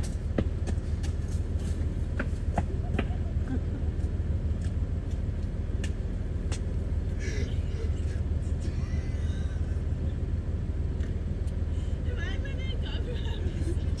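Car engine idling: a steady low rumble, with a few faint clicks.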